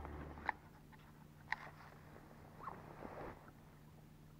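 Faint handling noise: a low hum that cuts off about half a second in, then two sharp clicks a second apart and a brief soft rustle near the end.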